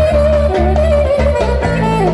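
Amplified clarinet playing a fast, wavering melody full of pitch bends and ornaments, over a steady low bass accompaniment whose notes change in blocks.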